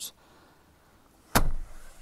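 A single loud clunk about halfway through as a Land Rover Discovery 4's second-row outer seat is released and tips forward for third-row access, dying away over about half a second.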